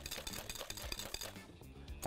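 Wire whisk beating eggs and sugar in a glass bowl: a fast run of light clicks as the wires hit the glass, fading away about one and a half seconds in.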